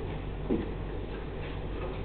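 Pen drawing short straight lines on a paper worksheet: faint strokes and light ticks of the pen tip, over a steady low room hum.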